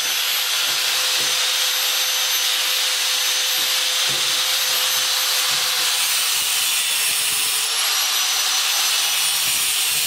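Angle grinder with a cut-off disc running steadily with a high whine as it cuts through the metal tubes of a fuel pickup.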